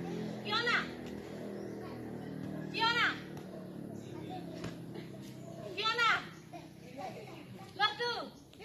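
Children's voices, with four short high-pitched calls about three seconds apart.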